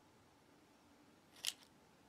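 Near silence, broken by one short light click about one and a half seconds in, with a fainter tick just after: a fruit bar in its wrapper being set down on a plastic meal tray.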